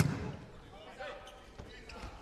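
A volleyball struck once, sharply, at the very start as the serve is received, followed by a low murmur of the arena crowd with a few faint voices.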